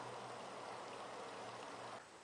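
Homemade solar shower's spray head running, a steady faint hiss and patter of water spray.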